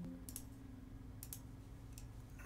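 Two faint computer mouse clicks about a second apart, each a quick double tick of press and release.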